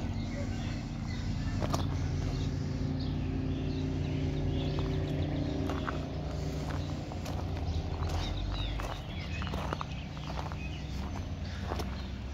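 Footsteps on gravel, with scattered light clicks, over a steady low hum.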